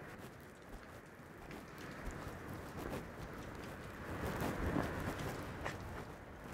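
Wind noise on the microphone outdoors: a rushing, rumbling hiss that grows louder in the second half.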